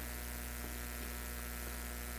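Steady low electrical mains hum with a faint hiss underneath, unchanging throughout.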